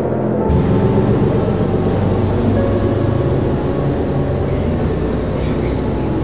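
Bus driving past: a loud, steady low engine and road rumble comes in about half a second in, with background music under it.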